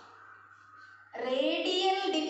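A quiet pause of about a second, then a woman's voice comes in, speaking in long, drawn-out, sing-song tones.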